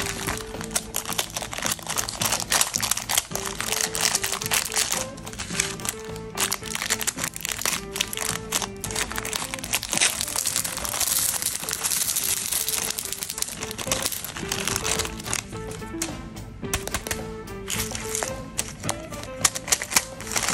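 Cellophane candy bags crinkling as they are handled, with a denser stretch of crinkling and snipping from about halfway through as a bag is cut with scissors. Background music with a simple repeating melody plays underneath.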